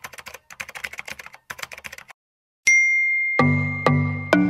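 Typing sound effect: a quick, faint run of light key clicks for about two seconds, then a single bell ding that rings on. Music with a steady beat comes in near the end.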